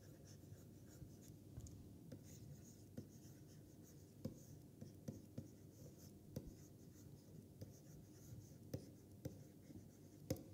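Faint scratching of a stylus writing on a tablet screen, with irregular light ticks as the pen tip touches down between strokes.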